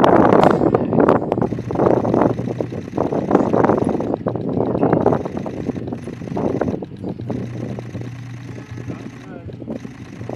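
Indistinct voices with no clear words, over a steady low hum, loudest in the first half and quieter near the end.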